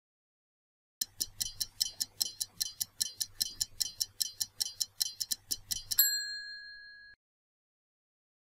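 Stopwatch ticking sound effect counting down a quiz answer time: rapid, even ticks about five a second, starting about a second in and lasting about five seconds. They are followed by a single bell ding that rings out for about a second, marking time up.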